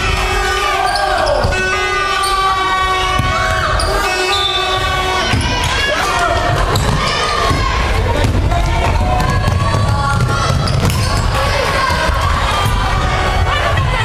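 Basketball game sound: the ball bouncing on the wooden court among many short knocks, with players' and spectators' voices calling throughout.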